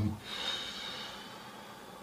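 A person's breath: a brief snort at the start, then a hiss of breath out that fades over about a second and a half.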